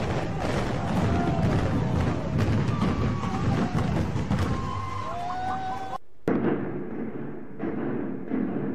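Implosion of a high-rise building: a heavy, continuous rumble of the tower collapsing, with a dense crackle of debris. It cuts off suddenly about six seconds in, and a duller recording with intermittent thuds follows.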